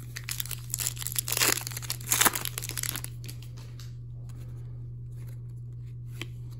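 Foil wrapper of an Upper Deck hockey card pack being torn open and crinkled, loudest in the first three seconds, then quieter handling, over a steady low hum.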